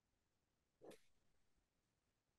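Near silence: room tone, with one faint, brief sound about a second in.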